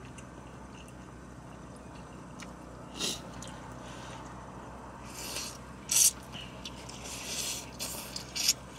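Someone slurping ramen: a few short, noisy slurps and sips, the loudest about six seconds in, over a low steady hum of the car cabin.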